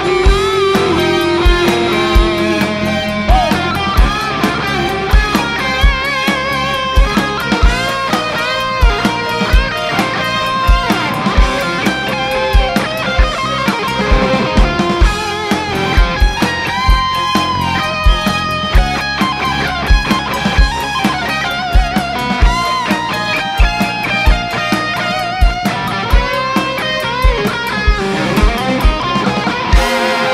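Live rock band playing, led by an electric guitar (a sunburst Fender Stratocaster) picking a lead line with bent notes over a steady drum-kit beat and bass.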